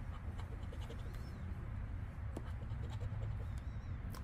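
A coin scratcher scraping the coating off a scratch-off lottery ticket in short, faint strokes, over a low steady hum.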